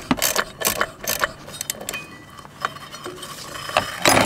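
Light clicks and knocks from hands working the CVT drive belt off a spread secondary clutch. The clicks come quickly in the first second and more sparsely after.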